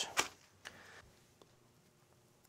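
Plastic dental impression trays and their plastic bag being handled: a sharp click just after the start, a brief rustle and a couple of faint ticks, then quiet room tone.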